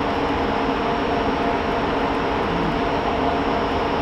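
Cooling fans of a Lenovo System x3650 M2 rack server running: a steady rushing noise with a faint, even hum.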